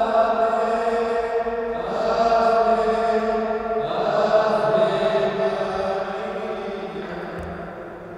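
A priest singing Maronite liturgical chant in long, held notes, the melody moving to a new note about two and four seconds in, then fading out near the end.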